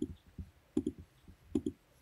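Computer mouse button clicks while options are picked from a dropdown menu: a run of short, sharp clicks, some in quick pairs, about every half second, stopping shortly before the end.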